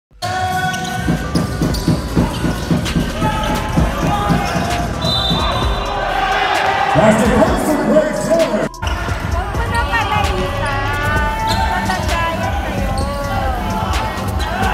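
A basketball being dribbled on a hardwood court, bouncing about three times a second for the first several seconds, with players and coaches calling out on court.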